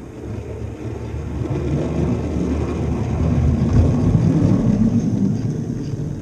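Hornby OO gauge model locomotive running along the track toward the microphone: a rumble of wheels on rail and the electric motor's whir, growing louder over the first four seconds as it draws close.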